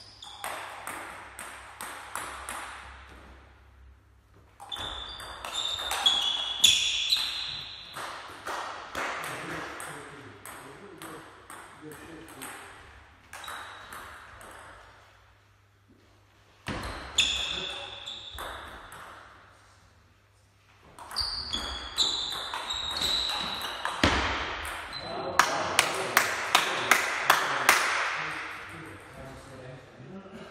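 Table tennis ball being hit back and forth: sharp clicks of the ball on the bats and the table in several rallies, with short pauses between points. Near the end comes a fast exchange of about three hits a second.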